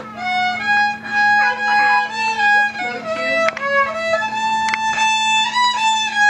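Solo violin playing an Irish fiddle tune: a bowed melody of held notes moving step by step up and down.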